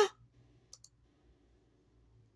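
A computer mouse button clicked twice in quick succession about three-quarters of a second in, over a faint low hum.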